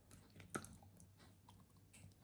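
Faint handling sounds of soy wax candles and silicone molds being picked up: soft rustles and small clicks, with one sharper click about half a second in.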